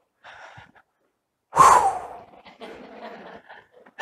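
A man's loud, breathy exhale or sigh into a microphone about a second and a half in, falling in pitch, with faint handling noises around it.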